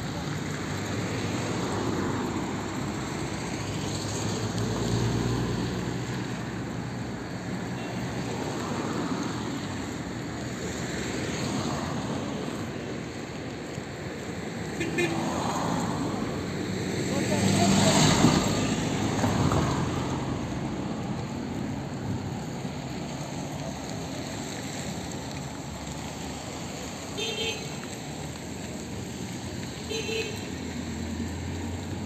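Road traffic: cars driving past close by one after another, each swelling and fading, the loudest passing about eighteen seconds in.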